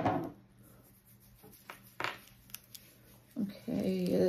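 A single sharp knock at the start, then faint rubbing and a few small clicks as a hand works body oil into the skin of the upper arm. A woman's voice comes in near the end.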